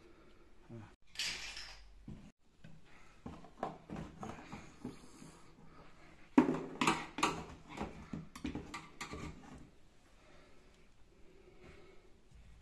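Sheet-metal flue fittings clicking and clattering as they are handled and pushed onto a gas water heater's flue outlet, with a run of sharp knocks from about six to nine seconds in.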